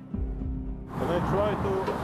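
Background music with steady low tones for about the first second, then roadside sound: the hum of passing motorway traffic under a man talking.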